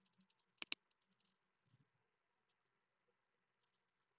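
Computer mouse and keyboard clicks while typing into a text box: two sharp clicks in quick succession just over half a second in, then a few faint key taps.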